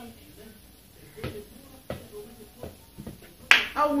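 A small football being kicked around indoors: four short, sharp knocks of foot and ball over about two seconds. Near the end comes a loud knock and a shout as a back-heel shot goes into the goal.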